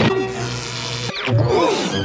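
Cartoon soundtrack snippets: about a second of background music with held notes and a falling sound-effect glide, then an abrupt cut to a brief wavering vocal cry from a character.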